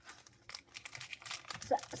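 Foil wrapper of a Pokémon booster pack crinkling as it is handled and opened: a quick run of small crackles starting about half a second in.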